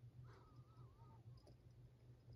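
Near silence: room tone with a low steady hum, and a faint wavering tone for about a second near the start.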